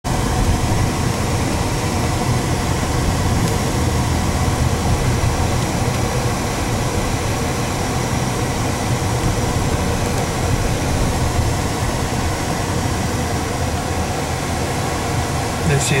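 Steady interior noise of a car driving slowly: a low engine and road rumble under an even hiss, with no sudden sounds.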